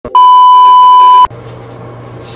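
Loud, steady test-pattern tone (the colour-bars beep) held for about a second, then cut off sharply. It gives way to low room noise with a faint steady hum.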